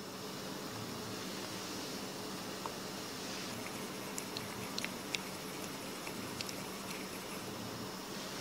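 A few light clicks and taps from a plastic sample cup and dropper bottle being handled, over a faint steady background hum.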